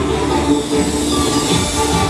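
Roller-skate wheels rolling on the stage floor in a steady low rumble as the pair spins, under the show's music.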